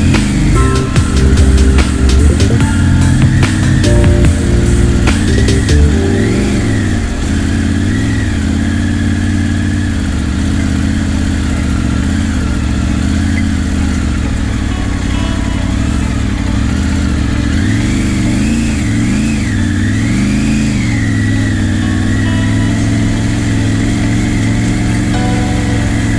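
Motorcycle engine running at low speed on a rough track, its pitch rising and falling as the throttle is opened and closed. Electronic music plays over it for about the first six seconds, then stops.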